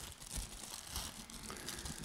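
Faint crinkling of plastic Little Debbie snack-cake wrappers being opened by hand.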